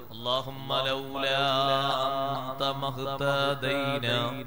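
A man chanting in a slow, melodic voice, holding long drawn-out notes, in the style of sung Arabic verse recitation.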